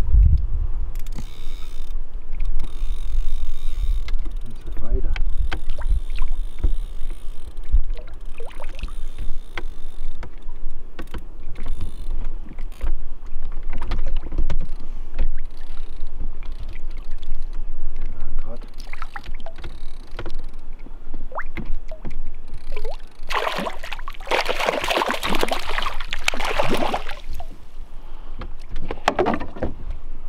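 Hooked trout splashing at the lake surface while being played on a line. There are a run of small splashes and a long spell of louder splashing about three-quarters of the way through, over a low rumble of wind or handling on the microphone.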